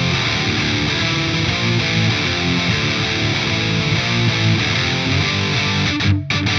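High-gain distorted electric guitar played through a Synergy DRECT preamp module, which is modelled on the Mesa/Boogie Dual Rectifier preamp. The guitar is a PRS, and it plays a continuous rhythmic riff of low, quickly changing notes.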